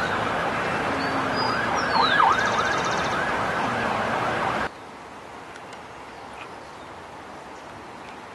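A siren sweeping up and down over a loud steady background noise. It cuts off abruptly about four and a half seconds in, leaving a much quieter outdoor background with a few faint clicks.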